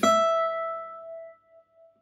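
A single 12th-fret note picked on a gypsy jazz acoustic guitar, one note of a turnaround lick played slowly. It rings out and fades away over about a second and a half.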